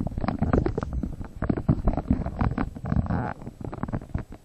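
Irregular rumbling and knocking on the microphone of a handheld camera as it is moved: handling noise, with some wind buffeting the microphone.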